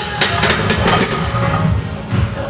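Music playing with a steady beat, with a few sharp metallic clanks right at the start as the loaded barbell is set back into the bench-press rack hooks.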